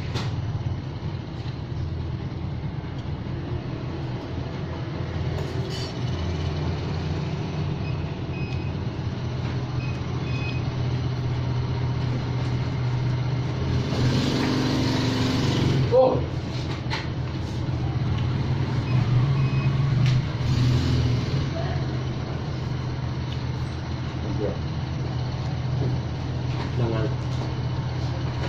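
A steady low mechanical hum, with a louder rushing noise swelling for about two seconds past the middle and a short sliding tone as it ends.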